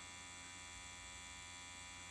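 Hummingbird Bronc V10 rotary tattoo pen motor running at 7 volts: a faint, steady hum, smooth and quiet.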